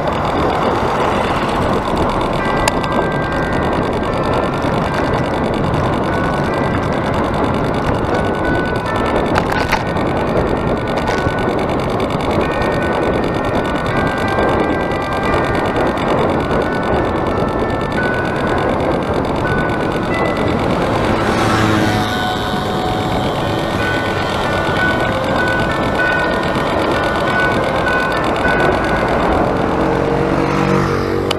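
Steady rush of wind and road noise on a bicycle-mounted action camera's microphone while riding, with short high tones scattered through it.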